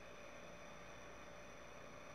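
Near silence: a faint steady hiss with a faint steady tone underneath, room tone with no distinct event.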